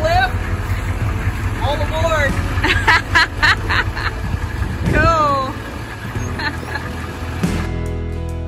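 A Thomas Built short school bus's engine running with a low rumble as the bus pulls away. A man's voice calls out excitedly over it several times, in long rising-and-falling shouts.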